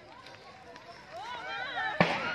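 Faint voices of people talking at a distance, picking up a little in the second half; no other distinct sound.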